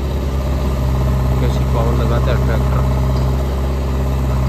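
Diesel engines of a JCB backhoe loader and a John Deere 5050 tractor running steadily at low revs while the loader fills the tractor's trolley with soil.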